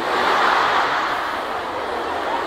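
A hall audience of female students laughing together. The laughter breaks out all at once and slowly eases off.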